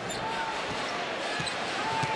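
Arena crowd noise with a basketball being dribbled on the hardwood court, and two short high squeaks, one just after the start and one near the end.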